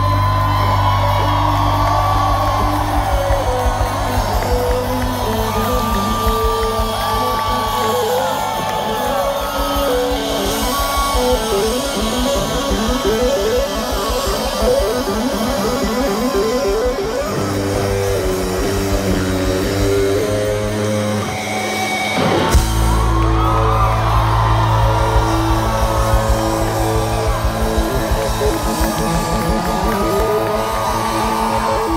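Rock band playing live in a stadium: distorted electric guitar riffing over bass and drums. About two-thirds of the way through, the bass drops out briefly, then the full band comes back in together on a hit.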